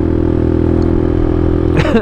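Suzuki DR200's single-cylinder four-stroke engine running steadily at a constant cruising speed, heard from on the bike.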